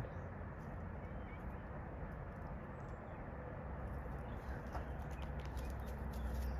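Quiet outdoor yard ambience with scattered faint ticks and rustles. A low rumble on the microphone comes in a little past halfway.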